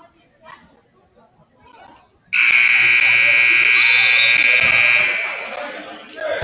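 Gymnasium scoreboard buzzer sounding one steady blast of nearly three seconds, starting suddenly a little over two seconds in, then fading in the hall's echo. It signals the end of a timeout. Faint crowd chatter runs underneath.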